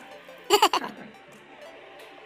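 Indian ringneck parrot giving one short, loud, harsh squawk about half a second in, its pitch falling.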